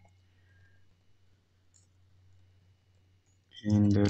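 Faint computer-keyboard typing clicks over a low steady hum, then a voice starts speaking near the end.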